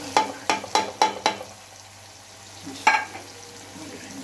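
A steel spoon tapping sharply against a metal karahi, five quick taps in the first second or so and one more near three seconds, as spices are knocked off the spoon. Under the taps, tomato masala sizzles steadily in hot oil.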